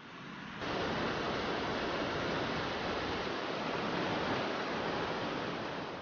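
Fast-flowing mountain stream rushing steadily. The sound steps up louder about half a second in.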